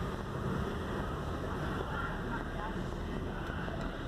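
Steady low engine and road noise heard inside the cabin of a Range Rover moving slowly.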